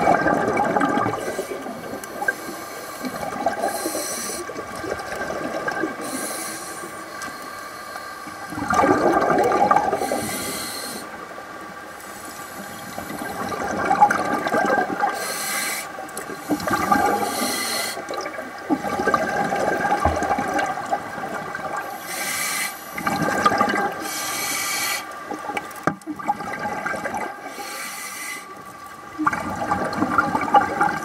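Scuba diver's breathing underwater: bubbling, gurgling surges of exhaled air from the regulator every few seconds, over a faint steady whine.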